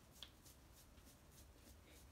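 Near silence: room tone, with a few faint, quick rustles and a small click about a quarter second in.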